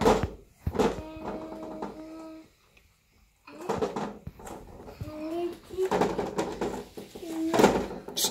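Small child's voice: a held sung note, then wordless babbling and gliding vocal sounds after a short pause. A few sharp knocks, like a hand slapping the door or mirror, come at the start and near the end.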